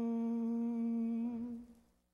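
A man's voice holding a long chanted "Om" on one steady pitch, now in its closing hummed "mmm", fading out shortly before the end.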